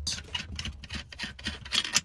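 A rapid, irregular flurry of small clicks and taps.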